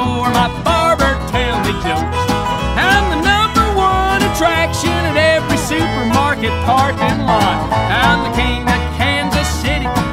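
A bluegrass-country string band of fiddle, resonator guitar, acoustic guitar and upright bass plays an instrumental break between vocal lines. The lead lines slide and bend in pitch over a steady bass pulse.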